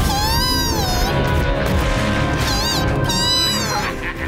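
High-pitched, mewing cries of a cartoon creature over background music: one cry about a second long that rises and falls, then two shorter ones near the end.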